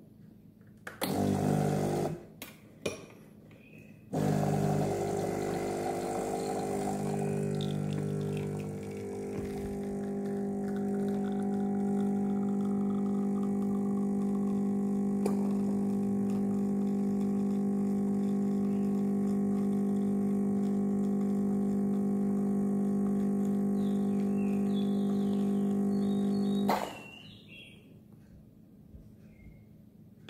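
Espresso machine's pump humming as it pulls a shot. A short first run about a second in is followed by a pause and a couple of clicks. A steady, loud hum then runs for about 22 seconds and cuts off near the end as the shot finishes.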